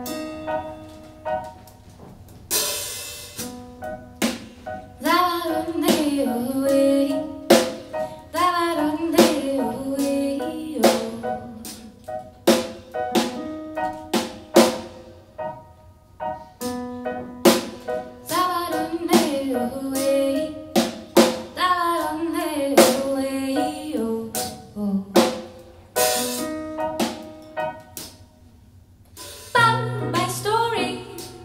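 Live band music: a drum kit keeps a steady beat on snare and kick under chords from an electric keyboard, with a sung melody over them in two long stretches and cymbal crashes near the start and near the end.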